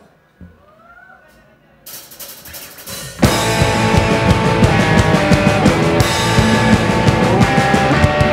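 Live hardcore punk band starting a song: after a quiet couple of seconds and a brief lead-in at about two seconds, the full band (electric guitars, bass and drum kit) comes in loud at about three seconds and plays on.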